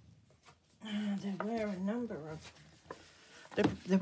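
Mostly a woman speaking, from about a second in, with a pause and more talk near the end. A few faint paper-handling clicks come before the speech.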